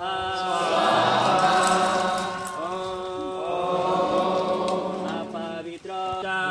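Mixed group of men and women chanting a Hindu mantra together, in long held notes that slide from one pitch to the next.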